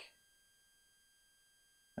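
Near silence: room tone with only a faint steady high-pitched whine.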